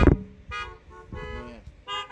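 Car horns honking in three short blasts, about two-thirds of a second apart, after a loud sharp hit right at the start.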